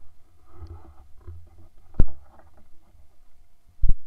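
Handling noise from a camera mounted on a weapon while the hunter moves through undergrowth: a low rumble with light scuffing and rustling, and two sharp knocks, the louder about two seconds in and a second near the end.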